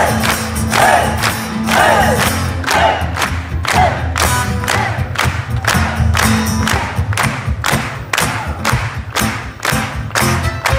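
Live band playing loudly with fiddle, acoustic guitar and a steady drum beat of about two and a half hits a second, heard from within the audience. Crowd voices sing and shout along over the first few seconds.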